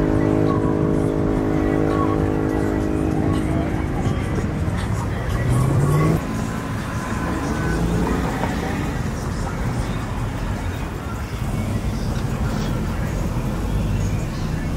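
Street traffic with car engines running and passing, one engine revving up about five seconds in, under crowd voices and music. A steady pitched tone holds for the first four seconds or so.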